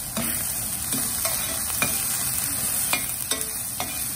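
Chopped onions and fresh curry leaves sizzling in hot oil in a stainless steel pan, stirred with a slotted steel spoon that scrapes and clinks against the pan now and then.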